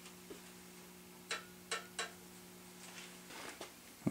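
A few faint, sharp clicks about a second apart, then a soft rustle near the end, over a steady low hum: small parts or tools being handled.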